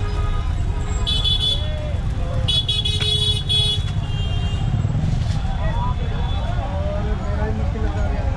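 Busy street ambience: a steady low rumble of traffic, with a vehicle horn honking twice, briefly about a second in and longer around two and a half seconds in. Faint voices are in the background.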